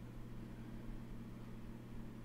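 A steady low hum with a faint hiss, unchanging throughout: room tone.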